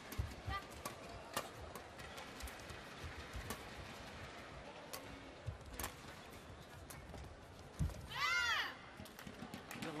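Badminton rally: sharp strikes of rackets on the shuttlecock about once a second, with footfalls on the court. Near the end comes a loud squeak of a shoe on the court floor that rises and then falls in pitch.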